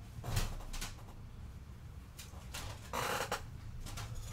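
Cardboard trading cards from a 1981 Topps football pack being slid and shuffled in the hands: a few short rustles, the longest about three seconds in.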